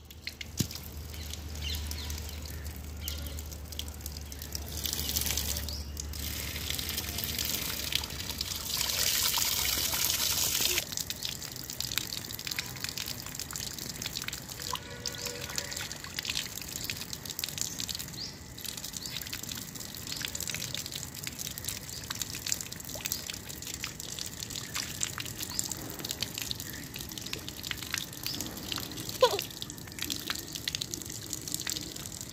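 Water running from an outdoor wall tap and splashing over a mango held under the stream and onto a stone floor, with louder splashing about five seconds in and again from about nine to eleven seconds.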